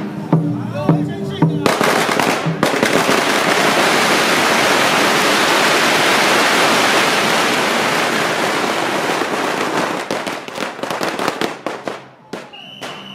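Brief rhythmic drumming and music, then a long string of firecrackers goes off in a dense, continuous crackle that breaks up into separate bangs near the end.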